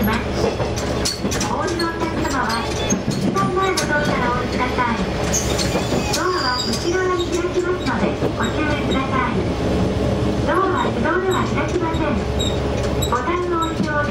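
Diesel railcar running along the track with a steady rumble of engine and wheels, and a few sharp rail-joint clicks in the first two seconds. A voice speaks on and off over the running noise.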